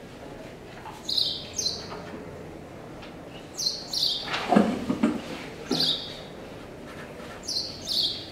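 A bird chirping: short, high, falling chirps, mostly in pairs, repeated every couple of seconds. A short low rustle comes about halfway through.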